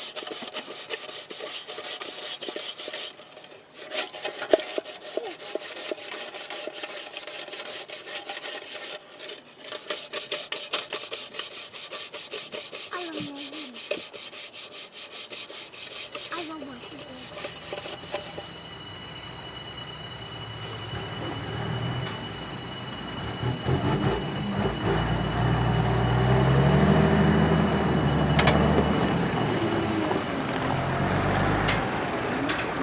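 Rapid rubbing strokes of a hand scrubbing a metal cooking pot, in runs with brief pauses. About halfway through this gives way to a heavy dump truck's diesel engine, growing louder toward the end.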